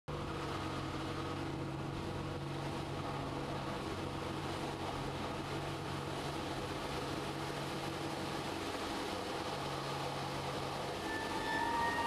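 Steady, fairly quiet drone of an aerobatic plane's engine heard from inside the cockpit, held at an even level. About a second before the end, steady higher tones come in as music begins.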